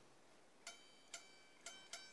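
Four faint, short plucked notes on the strings of a Harley Benton TE-40 Telecaster-style electric guitar, picked high on the neck. Each note cuts off quickly: the strings are still choking out, which the player finds he apparently cannot stop.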